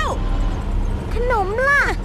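Steady low hum of a futuristic vehicle's engine under high-pitched cartoon voices speaking.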